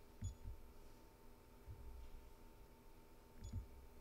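Near silence in a large church: faint room tone with a steady faint tone, a few soft low thumps and two faint high clicks, one near the start and one near the end.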